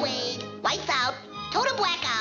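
Cartoon orchestral score with two short, high-pitched, gliding vocal calls from a cartoon character, one about two-thirds of a second in and one near the end.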